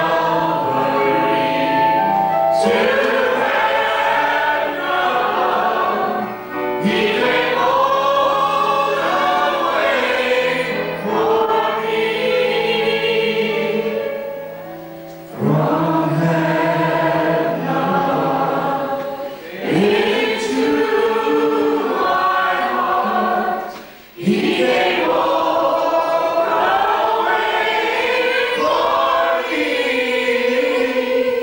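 Mixed church choir of women's and men's voices singing a hymn in long phrases, with short breaks between phrases at about 15 and 24 seconds.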